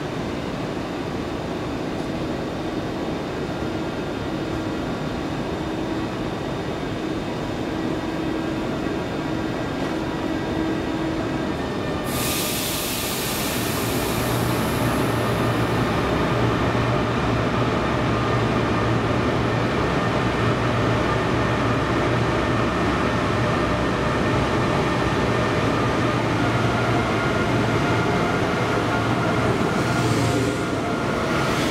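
EP20 'Olymp' electric locomotive humming at a standstill. About twelve seconds in comes a sudden hiss of air that fades over a few seconds, then a deep steady hum sets in and grows a little louder as the double-deck train starts to pull away.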